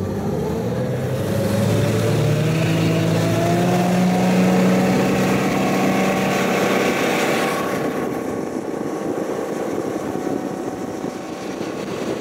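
Yamaha 275 outboard motor on a bass boat accelerating away, its pitch rising over the first few seconds and then holding steady at speed. After about eight seconds it gives way to a duller, rushing drone of the boat running.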